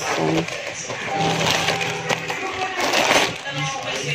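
Plastic packaging crinkling and rustling as a plastic courier mailer is opened and a plastic-wrapped item is pulled out, with irregular crackles throughout.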